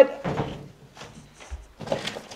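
A few short knocks and rustles of handling: a flat plate is set down, then hands rummage through a cardboard shipping box, with a low thump about one and a half seconds in.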